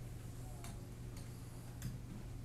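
Steady low electrical hum with three light, irregularly spaced clicks, the last one near the end the loudest.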